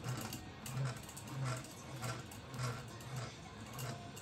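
Electric fishing reel winding line in under its motor, taking it off a supply spool turning on a wooden dowel: a low hum that swells evenly about one and a half times a second, with light ticking.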